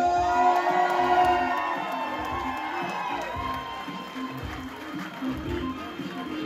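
Upbeat entrance music with a steady beat plays over a crowd of guests cheering, and the cheering is loudest in the first couple of seconds.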